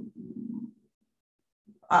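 A woman's low, hesitant murmur trailing off in the first moment, then about a second of complete silence, with speech starting again near the end.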